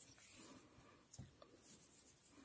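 Near silence, with faint rustling of yarn and a soft click about a second in as a crochet hook works a stitch.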